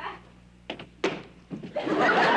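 About three heavy footsteps, shoes knocking on a stage floor as a man strides across, then studio audience laughter swelling up near the end.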